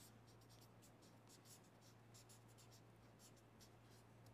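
Felt-tip marker writing on paper: a faint run of short scratching strokes, several a second, as characters are drawn.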